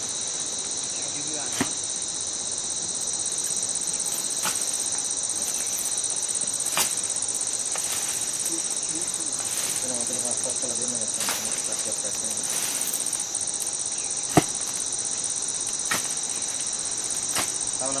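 A steady, high-pitched insect chorus. A handful of sharp clicks or snaps are scattered through it, the loudest about fourteen seconds in.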